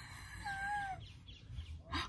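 A single faint bird call: one clear, drawn-out note about half a second long that wavers slightly and rises at its end.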